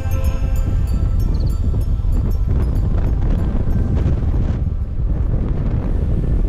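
Wind buffeting the microphone of a camera on a moving motorcycle, a loud, steady low rumble. A music track fades out over the first second or two.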